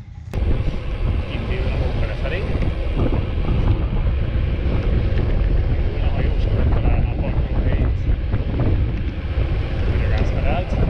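Wind buffeting the microphone of a handlebar-mounted camera on a moving road bicycle, a heavy low rumble that starts suddenly just after the beginning and holds steady.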